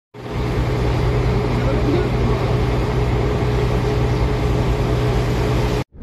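Boat engine running at a steady low drone under wash of water and wind noise, cutting off abruptly near the end.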